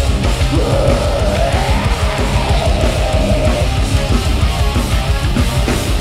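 Hardcore band playing live at full volume: heavily distorted electric guitars, bass and drums in a dense, continuous wall of sound, with a held, wavering note through the first few seconds.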